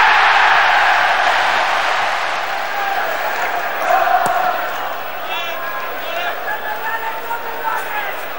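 Football stadium crowd roaring and cheering after a goal, loudest at the start and slowly dying down. A single sharp thud of a ball being kicked comes about four seconds in.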